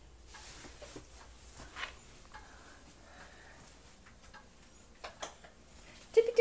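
Quiet room tone with a few faint, scattered taps and light knocks.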